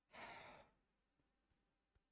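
A short sigh: one soft breath out, about half a second long near the start, followed by near silence.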